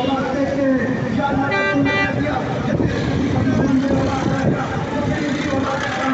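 Busy road traffic with vehicle horns honking: two short honks close together about a second and a half in, over a continuous rumble of engines and voices.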